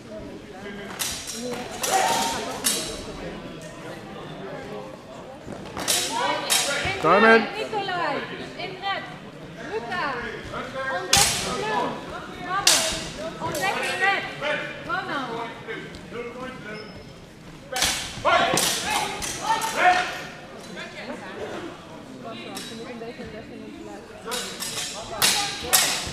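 Sparring swords striking: clusters of sharp clashes and hits at intervals, echoing in a large sports hall, with shouting voices between them.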